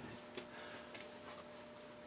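Very quiet room tone with a faint steady electrical hum and a couple of faint ticks; no tool is running.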